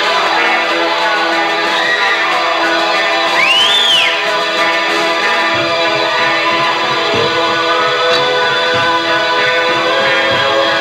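Live electric guitar playing a sustained, layered instrumental passage, with one high note bent up and back down about three and a half seconds in. Deeper notes join about five and a half seconds in.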